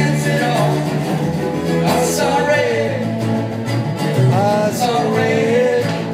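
Live acoustic music: several acoustic guitars strumming and picking together under a singing voice that holds long, wavering notes.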